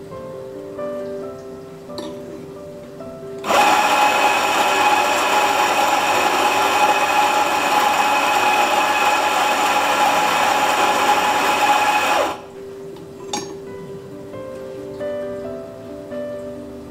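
Anfim Scody II espresso grinder grinding coffee beans into a portafilter: its motor runs with a steady whine and grinding rasp. It starts suddenly a few seconds in and cuts off after about nine seconds.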